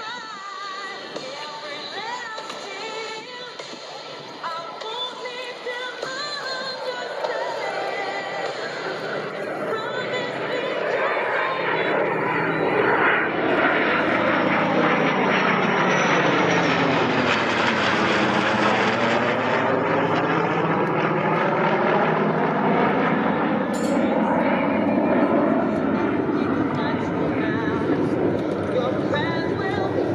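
An F/A-18F Super Hornet's twin F414 turbofans and a Corsair flying a formation pass. Their engine rush builds from faint to loud over the first dozen seconds, sweeps as the pair passes overhead about halfway through, and stays loud as they move away. Music plays faintly at the start.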